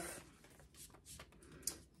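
Faint rustling of a small paper slip and pen being handled, with one short sharp click about three-quarters of the way through.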